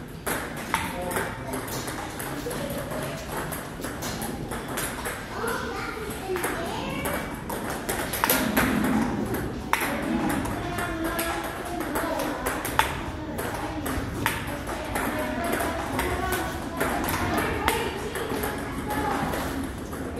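Table tennis ball struck back and forth in a rally: repeated sharp clicks of the celluloid ball off rubber paddles and bouncing on the table, at an irregular pace.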